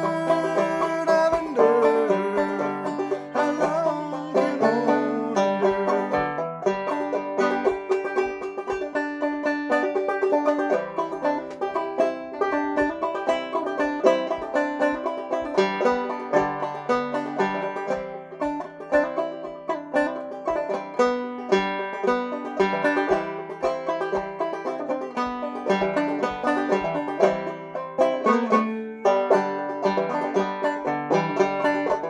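Banjo played solo in an instrumental break of an old-time mountain song: a steady rhythm of picked notes over a repeating low drone.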